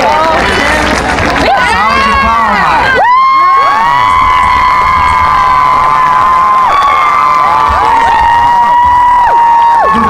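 Crowd cheering and screaming. Overlapping rising-and-falling yells fill the first few seconds, then from about three seconds in come long, high held screams from several voices at once.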